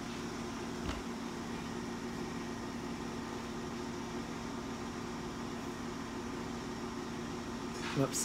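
A steady hum with a few constant low tones, like a fan or appliance running, with one faint click about a second in.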